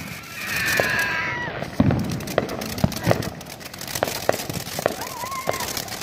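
Ground fountain firework spraying sparks, crackling with many sharp pops scattered irregularly throughout.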